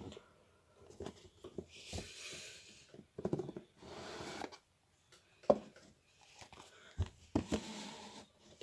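Faint handling of a cardboard product box: a few light taps and knocks, with short scraping rustles of cardboard sliding against cardboard.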